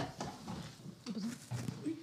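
A pause between speakers: a light click at the very start, then faint, low voices off the microphone.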